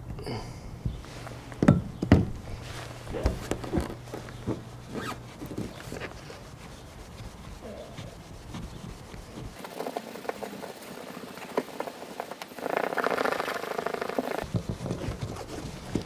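A hand rubbing and wiping a scratched plastic camper bubble window with rubbing compound and a microfibre towel: irregular scuffing and rubbing with small knocks, and a louder stretch of fast, steady rubbing about three-quarters of the way through.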